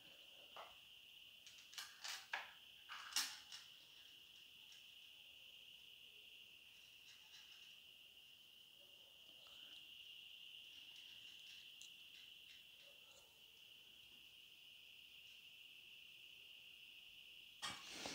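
Near silence: a few faint clicks and rustles from a leather wallet being handled in the first few seconds, over a steady faint high-pitched whine.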